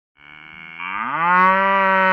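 Limousin cow giving one long moo. It starts softly and low, rises in pitch and grows louder over about a second, then holds steady.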